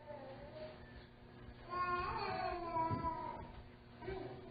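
A faint, drawn-out high-pitched cry during a pause in the preaching: a brief one near the start, then a longer, slowly wavering one from about two seconds in that lasts over a second.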